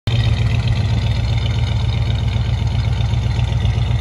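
1967 Chevrolet C10 pickup engine idling steadily, a low, even pulsing from the exhaust.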